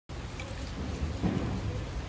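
Low, steady rumbling noise on the microphone, heaviest in the bass, with no clear speech.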